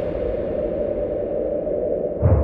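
Sustained low drone of a TV programme's title-sting sound effect, steady and noisy.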